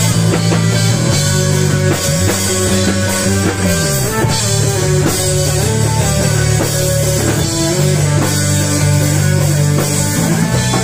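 Live rock band playing an instrumental passage: electric guitars, bass guitar and drum kit, loud and continuous, with the low notes sliding in pitch about two seconds in and again near four seconds.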